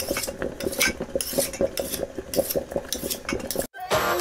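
Cutlery and kitchen utensils clinking and scraping against dishes in quick, irregular clicks. The sound stops suddenly near the end.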